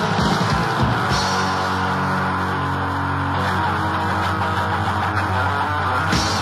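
Stenchcore (metal-tinged crust punk) band recording from a cassette: distorted guitar and bass with drums. The drums drop out about a second in, leaving the guitar and bass sounding on their own, and come back in right at the end.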